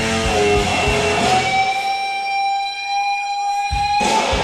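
Live blues-rock band led by an electric guitar. About a second in the band drops away, leaving one long sustained guitar note. Drums and bass come back in just before the end.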